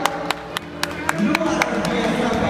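Scattered hand claps, a few irregular sharp claps a second, over a low murmur of voices.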